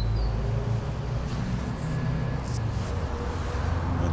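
A motor vehicle's engine running: a steady low rumble with an even hum.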